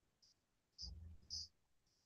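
Near silence with a brief, low, quiet vocal murmur about a second in, and faint high ticks recurring every half second or so.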